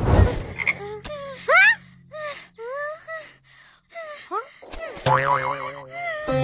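A sudden thud, then a string of short, squeaky vocal sounds that rise and fall in pitch: cartoon groans and whimpers from a child character. Music comes in about five seconds in.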